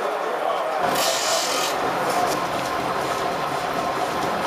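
Saw-sharpening machine working along the teeth of a long saw blade, a steady rasping and rubbing, with a brief hiss about a second in.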